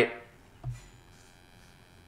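Near silence: quiet small-room tone with a faint electrical hum, as a man's voice trails off at the start. One brief, soft low sound comes a little over half a second in.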